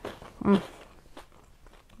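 A woman chewing a mouthful of crisp toast, with faint small crunches, and a short hummed "mm" of approval about half a second in.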